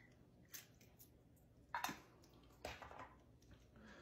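Faint, soft wet plops and a few light taps as diced green chilies are emptied from a can into a pot of browned ground beef and beans, with near silence in between.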